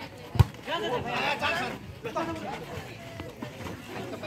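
A volleyball struck once with a sharp slap about half a second in, followed by voices of players and spectators calling out.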